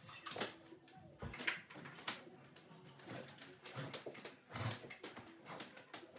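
Faint rustling and light knocks of a bundle of speaker wire being handled and pulled, a soft irregular series of scrapes and clicks.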